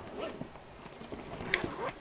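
Faint knocks and clicks of a clear plastic goodie bag and its contents being handled, with one sharper click about one and a half seconds in.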